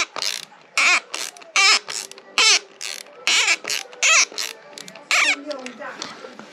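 A threadlocked steel rim bolt on a Dualtron Eagle wheel squeaking in its threads as it is turned out with a ratcheting hex driver: a short, falling creak with each stroke, about eight in all. The heated thread lock has softened and the bolt is coming loose.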